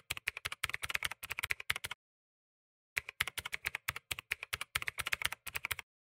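Typing sound effect: rapid key clicks in two runs of about three seconds each, with a second of silence between them.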